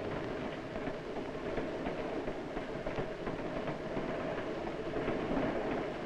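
Steady rumble of a moving train heard inside its baggage car, over the hiss and hum of an old film soundtrack.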